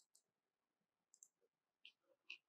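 Near silence: room tone with a few faint, short clicks, spread through the two seconds.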